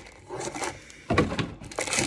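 Hands rummaging in a cardboard trading-card box: brief rustles and scrapes of packaging, the loudest about a second in.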